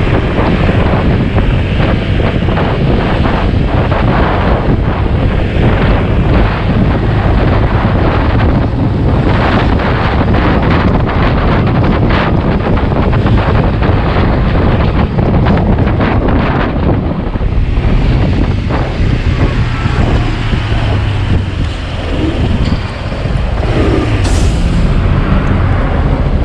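Wind rushing over the camera microphone on a moving Honda PCX 125 scooter at city speed, mixed with the road and engine noise of the ride. The noise is loud and steady, dipping briefly a few seconds before the end.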